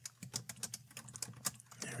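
Typing on a computer keyboard: a quick, irregular run of soft keystrokes as code is entered.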